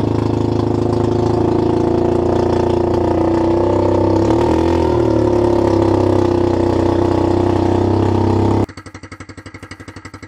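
Gas engine of a converted golf cart, chain-driving the rear axle, running loud and steady as the cart drives off. Its pitch dips briefly and recovers a little past halfway. Near the end it cuts to a much quieter, evenly pulsing idle.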